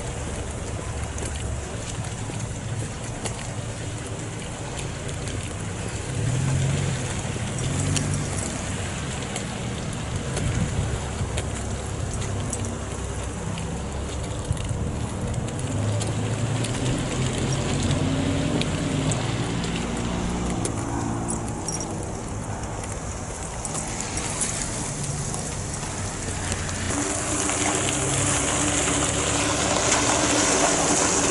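Outdoor car-park noise heard through a handheld camera's microphone while walking: an uneven low rumble of handling noise over a steady wash of vehicle sound. Near the end a car engine runs close by and grows louder.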